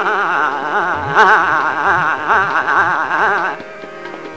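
Male Hindustani classical singer holding a sung vowel with fast, wavering ornamentation, accompanied by tabla whose bass drum strokes glide in pitch. The voice breaks off about three and a half seconds in, leaving the tabla.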